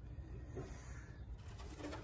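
Faint low-pitched bird calls, one about half a second in and another near the end, over a steady low rumble.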